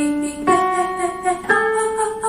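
Digital piano chords struck about once a second, each a new chord held and fading: the keyboard accompaniment for a vocal warm-up.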